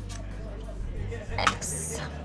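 A single sharp clink, like glassware or a dish knocked on a bar counter, followed by a brief high hiss, over a low steady hum.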